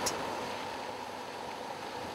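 Steady, even noise of a boat moving over water, with a faint steady tone underneath.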